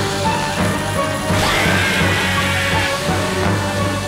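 Cartoon background music with a crash-like sound effect over it. A whistling tone rises about a second and a half in and then holds.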